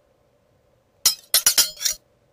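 Sharp metallic clinking sound effect: about five quick, bright, ringing strikes in the second half, stopping abruptly.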